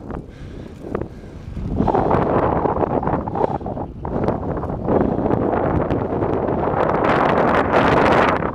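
Wind rushing over the camera microphone on a moving bicycle, growing louder about two seconds in and staying strong, with a few small knocks.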